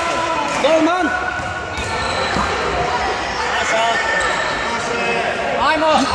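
Thuds of a futsal ball being kicked and bouncing on a sports hall's wooden floor, echoing in the hall. Voices call out over it several times.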